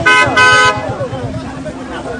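A vehicle horn honks twice in quick succession, a short toot then a longer blast of about a third of a second, over voices and street noise.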